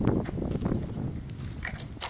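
Low wind rumble on the microphone with light knocks and clicks from the aluminium-framed solar panel assembly being handled, the firmest knock right at the start.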